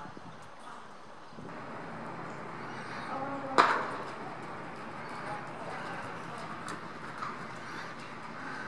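Icelandic horse's hoofbeats on the dirt footing of an indoor arena, with one sharp knock about three and a half seconds in.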